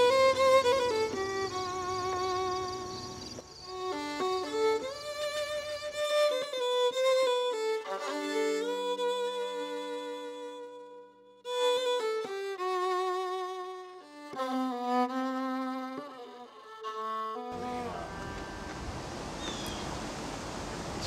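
Background music: a solo violin playing a slow melody with vibrato on its long held notes, pausing briefly about halfway through. Outdoor background noise is mixed in under it near the start and again near the end.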